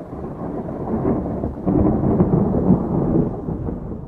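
A low rumbling noise, building louder after about a second and easing off near the end.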